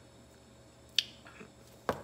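A short pause in speech with low room tone, broken by one sharp click about halfway through. A brief breath-like sound follows just before talking starts again.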